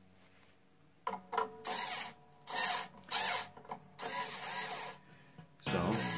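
Small cordless drill-type string winder on an acoustic guitar's tuning peg: a string of short mechanical bursts and rattles as it is fitted and tried, then, near the end, the motor starts running steadily, turning the tuner to slacken the A string.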